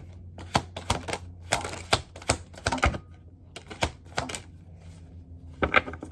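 A deck of tarot cards being shuffled by hand: a run of sharp card slaps and clicks at an uneven pace, with a brief rush of sliding cards about a second and a half in, over a low steady hum.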